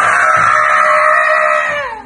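A man's long, high-pitched scream, held steady for about two seconds and dropping in pitch as it cuts off near the end.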